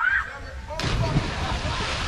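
A brief voice calling out, then, a little under a second in, a person hitting the water feet-first from a high rope swing: a sudden, loud splash whose spray keeps rushing on afterwards.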